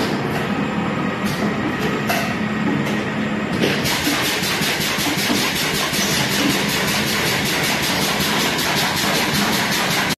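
Automatic piston filling and screw capping line for liquid detergent running, a steady mechanical noise with a few sharp clicks. About three and a half seconds in it changes to a fast, even clatter.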